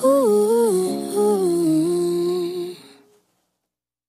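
Female voice singing a wordless "ooh" line that glides between a few notes and ends on a held note, fading out about three seconds in. The song ends there, and the rest is silence.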